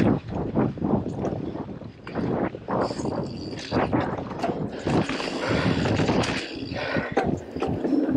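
Mountain bike ridden over a bumpy dirt trail: an uneven clatter of knocks and rattles from the bike and tyres over the ground, with wind on the microphone.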